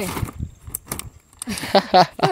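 A hand-held umbrella being opened and turned over: the canopy rustles and the frame gives a few light clicks about a second in, then a voice comes in near the end.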